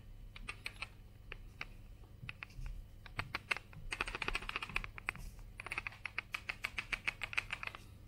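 Plastic 50 ml screw-cap centrifuge tube handled in the hands, giving faint light plastic clicks. They are scattered at first, then come in two dense runs of rapid clicking in the second half.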